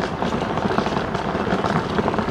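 Steady rushing wind and handling noise on a camera's built-in microphone as it is carried along on foot.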